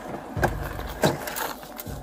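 Scuffing and handling noise against a car door whose window has been smashed, with a few sharp knocks about half a second and a second in, over a low rumble.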